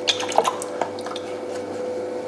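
Electric potter's wheel humming steadily as it spins, with a few light drips of water falling every second or so.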